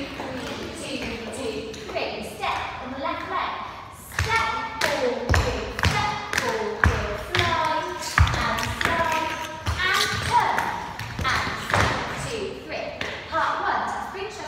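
Dancers' shoes striking and scuffing a hard studio floor in a rhythm of sharp thuds and taps, thickest through the middle. A woman's voice calls out the rhythm over the steps, with the room's echo.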